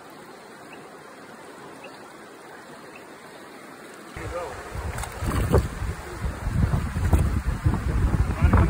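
Shallow stream water running steadily, then from about four seconds in, loud irregular rumbling buffets of wind on the microphone over the water.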